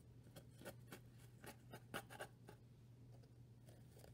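Faint scratching and rubbing of yarn being drawn through the warp strings of a cardboard loom, with fingers brushing the cardboard. A quick run of soft scratches comes mostly in the first two and a half seconds, then it grows quieter.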